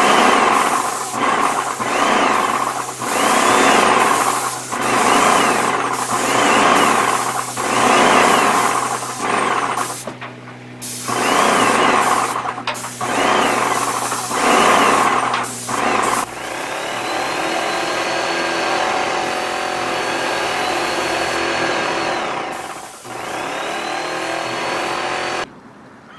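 Graco Magnum X5 airless paint sprayer spraying: a string of hissing bursts about a second long, one for each trigger pull of the spray gun, over the steady hum of the pump. About two-thirds of the way through it turns to a steadier, continuous sound with a high whine.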